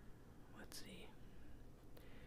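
Very faint pen strokes on sketchbook paper, barely above near silence, with one brief soft sound about three quarters of a second in.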